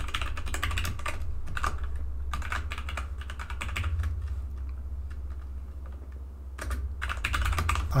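Typing on a computer keyboard: quick runs of key clicks, thinning out for a couple of seconds past the middle, then another burst near the end.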